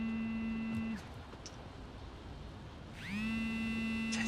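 Mobile phone buzzing with an incoming call: two identical buzzes, each over a second long and about two seconds apart, each rising briefly in pitch as it starts, then holding steady.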